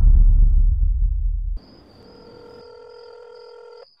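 A deep, loud low rumble for the first second and a half, then a steady telephone ringing tone heard on the line for about two seconds. The ringing cuts off just before the call is answered.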